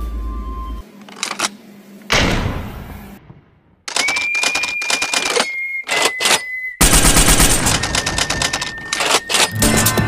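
Intro sound effects with music: a noisy swell about two seconds in, then a steady high beep with clicks from about four seconds, then a fast rattling run of clicks like gunfire over music from about seven seconds.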